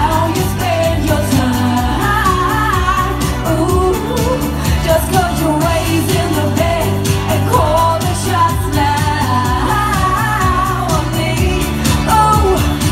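A woman singing a pop song live into a handheld microphone, her voice amplified over loud backing music with a steady bass line and beat.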